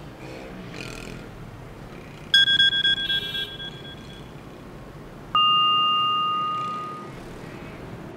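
Mobile phone alert tones: a short warbling electronic trill about two seconds in, then a single clear bell-like ding a few seconds later that rings out and fades over about two seconds.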